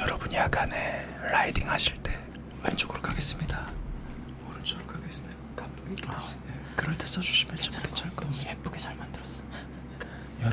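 A man whispering close to the microphone, ASMR-style, with a few soft clicks among the breathy words.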